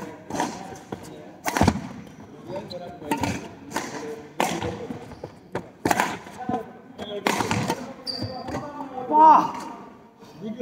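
A badminton rally in a large hall: sharp racket strikes on the shuttlecock about every second and a half, with players' footfalls on the wooden court between them. Near the end a short, loud voiced shout or laugh as the rally ends.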